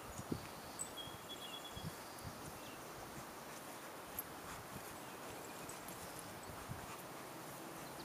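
Quiet outdoor yard ambience: a steady faint hiss with a few soft low thumps, mostly in the first two seconds, and faint high bird chirps.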